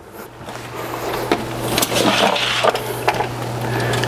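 Rustling, scraping and light clicks of a thin electrical cable being handled and fed along the inside of wooden cabinets, over a steady low hum.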